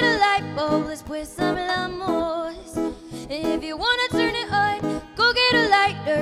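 A woman singing a pop song live, accompanied by a strummed ukulele and an acoustic guitar.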